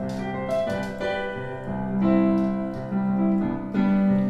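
Digital keyboard with a piano sound playing the song's introduction: held chords that change every second or so.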